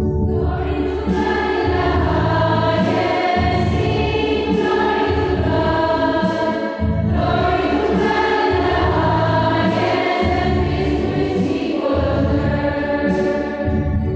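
Choir singing a church hymn in long held phrases with brief pauses between them.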